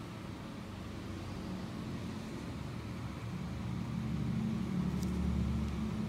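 A low, steady motor-like hum with a few pitched tones, growing louder about halfway through.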